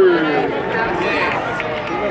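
A drawn-out call over the stadium loudspeakers, falling in pitch and ending just after the start, followed by crowd chatter from the stands.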